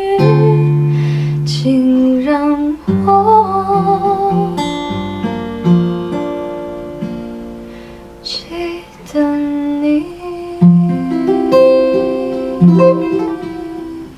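Acoustic guitar fingerpicked, with single notes and chords plucked and left to ring out and fade before the next phrase.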